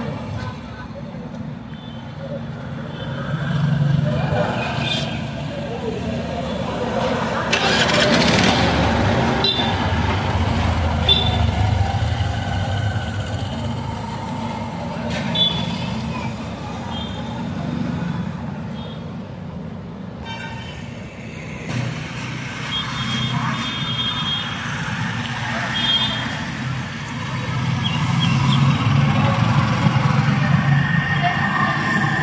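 Steady outdoor road traffic noise with a low rumble, swelling as a louder vehicle passes about eight seconds in.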